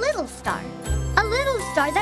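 Children's cartoon background music with tinkling chimes and a steady bass note that comes in about a second in, with a child's voice making wordless, gliding sounds over it.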